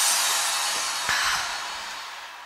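The tail of an electronic music sting for an animated title: a hissy whoosh fading away, with a brief swell about a second in.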